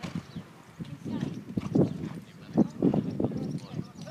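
Hoofbeats of a ridden horse moving round a jumping course: a run of dull, irregular thuds that grows louder from about a second in.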